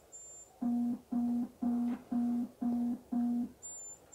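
Satellite signal finder beeping as the dish's LNB is turned: a run of six short, low buzzing beeps about two a second, with a fainter high-pitched beeping at the start and again near the end. The beeping signals that the dish is picking up the satellite's signal.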